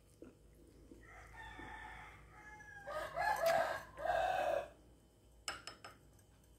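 A rooster crowing: one drawn-out, high-pitched crow starting about a second in, faint at first and loudest in its last two notes, ending before the fifth second. A few light clicks follow near the end.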